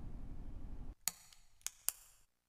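Faint background noise that cuts off about a second in, followed by three short, sharp clicks.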